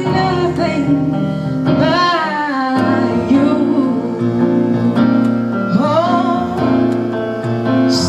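A woman singing a slow gospel song into a microphone over held keyboard chords. Her long sung phrases waver and bend in pitch, one about two seconds in and another near six seconds.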